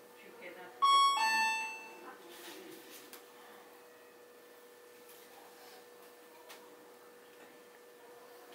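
Electronic two-tone chime, a higher note followed by a lower one, sounding once about a second in and fading within a second, over a steady faint hum.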